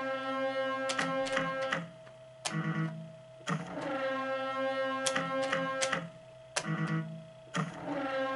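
Pachislot machine background music: an electronic melody with sharp, plucked-sounding notes, looping in a phrase that repeats about every four seconds.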